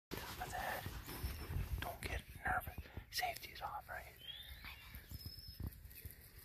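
Hushed whispering, close to the microphone, in short phrases, dying down after about four seconds.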